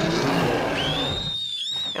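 A brown bear roaring, a loud, raspy call over about the first second. After that, a thin, high, wavering whistle-like tone is heard to the end.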